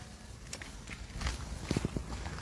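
A few faint footsteps, irregular, over a low background rumble.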